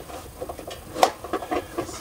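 Light rustling and handling noises as small gear is worked by hand, with a few small clicks and one sharp click about a second in.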